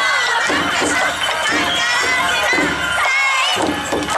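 A group of young dancers shouting calls together, several voices overlapping, over festival dance music and crowd noise.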